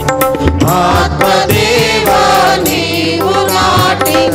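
A group of voices singing a Christian devotional song together through microphones, with tabla strokes keeping a steady beat.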